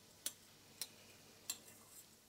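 A spoon tapping against a stainless-steel saucepan as a reducing cream sauce is stirred: three light clicks a little over half a second apart.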